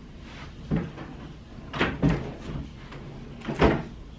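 Several knocks and bumps from a wooden dresser's drawers and doors being opened and shut while clothes are pulled out, the loudest knock near the end.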